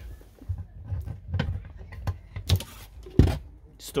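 A motorhome's carpeted double-floor hatch being unlatched by its flush pull and lifted open: a series of small clicks and knocks, with the loudest thump a little past three seconds in.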